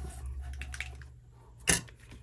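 Light rustling of paper cutouts being slid on a cutting mat over a low steady hum, then one sharp click near the end as the cap of a small squeeze bottle is snapped open.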